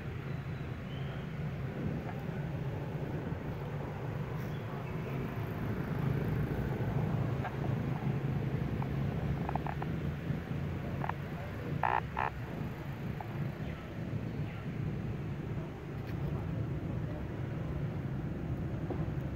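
Outdoor background sound: a steady low rumble, with a few brief high chirps about ten and twelve seconds in.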